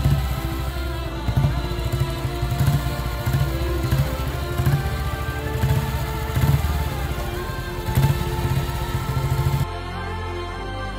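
Background music over a vintage Panther single-cylinder motorcycle engine running. The engine drops out just before the end, leaving the music alone.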